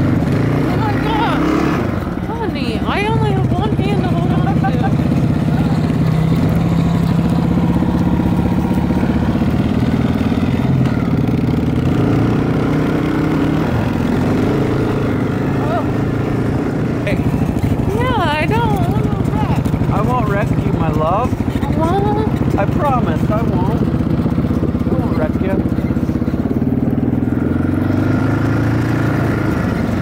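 Four-wheeler (ATV) engine running steadily while being ridden over snow, its pitch shifting a little with the throttle. Voices rise over it twice, a few seconds in and again past halfway.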